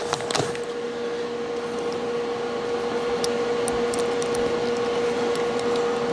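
Steady mechanical hum with a constant mid-pitched tone, slowly growing louder, with a few faint clicks.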